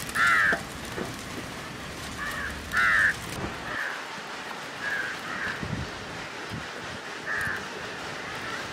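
Crows cawing: a series of short harsh calls, the two loudest about half a second and three seconds in, with fainter calls after.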